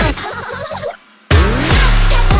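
Electronic pop song with a break: the full beat drops out just after the start, leaving a thin, quieter layer, then cuts to near silence for a moment before the full beat and deep bass slam back in about a second and a half in, with falling pitch sweeps.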